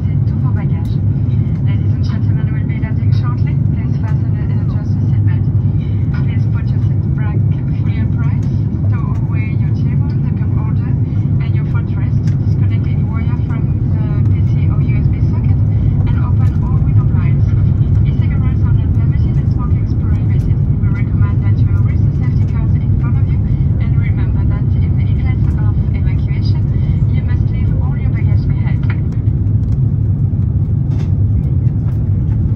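Steady low rumble of an Airbus A350-900 in flight, its engine and airflow noise heard inside the passenger cabin, with indistinct passenger voices in the background.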